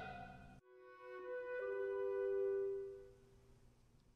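Music fading out, then after a short gap a quiet held note that shifts pitch once and dies away about three seconds in.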